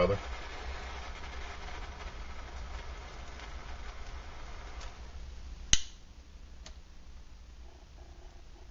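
Butane lighter hissing steadily as its flame is held to soy-wax-coated wood chips that are slow to catch. About six seconds in, the hiss stops with a sharp click.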